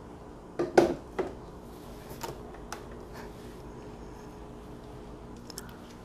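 Metal clunks and clicks as a bottomless portafilter is fitted and twisted into the group head of a Breville Barista Express, the loudest a little under a second in, followed by a few lighter knocks, over a faint steady hum.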